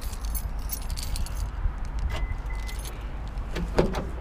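Light metallic jingling over the first second and a half, then two short high beeps about two seconds in, and a single knock near the end.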